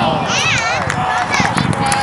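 Excited, high-pitched shouting voices from players and spectators during youth soccer play, with no clear words.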